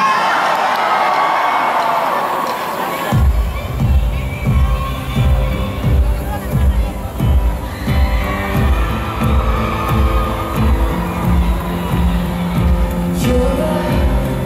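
Large arena crowd cheering and screaming. About three seconds in, a live pop band starts a slow song intro with a deep, steady beat of about two thumps a second under sustained chords, the crowd still heard beneath it.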